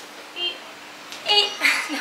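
A woman's voice: a short vocal sound about half a second in, then speech starting near the end, over quiet room tone with a faint steady hum.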